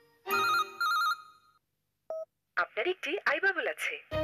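Mobile phone ringing with two short warbling trills about half a second each, followed by a single short beep and then a person talking.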